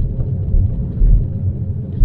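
Steady low rumble of tyres on a ploughed, snow-covered road, heard inside the cabin of a Tesla Model 3 electric car driving downhill.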